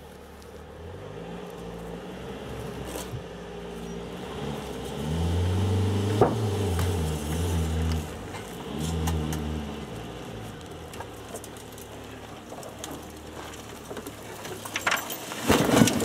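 A wrecked sedan being tipped over onto its side: low, drawn-out metal creaking that shifts up and down in pitch, loudest in the middle, with a sharp creak about six seconds in. A loud crash near the end as it comes down.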